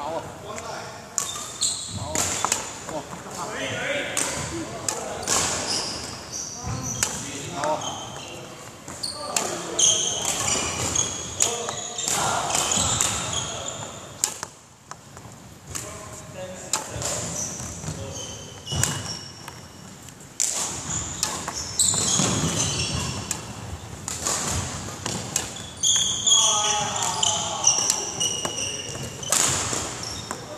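Court shoes squeaking and feet thudding on a wooden sports-hall floor as a badminton player moves quickly around the court, with many short high squeaks throughout.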